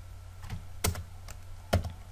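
Computer keyboard keystrokes: a few separate key clicks spread over two seconds as code is typed.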